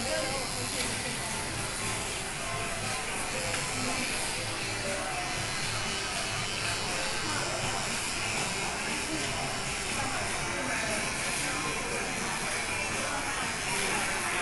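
Electric hair clippers buzzing steadily as they cut a child's short hair, with music and voices in the background.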